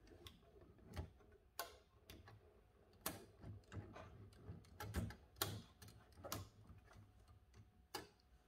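Carriage locking lever mechanism of an Olivetti Lettera 22 portable typewriter being worked by hand: faint, irregular metallic clicks, about a dozen, the sharpest about three seconds and five seconds in.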